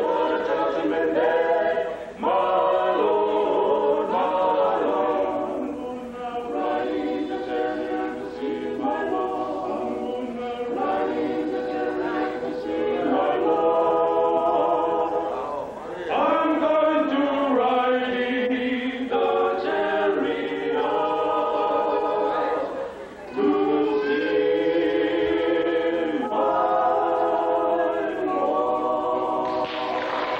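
Male vocal quartet singing a cappella in close harmony, in long sustained phrases, with two brief breaks, one about two seconds in and one about 23 seconds in.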